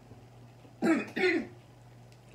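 A person clearing their throat twice in quick succession, about a second in.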